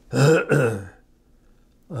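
An elderly man coughs twice in quick succession, two short voiced coughs within the first second.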